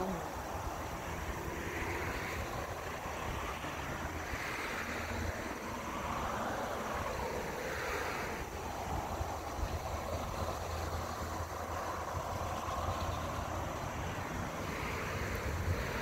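Steady outdoor background noise: a soft rush that swells and fades every few seconds over a low hum.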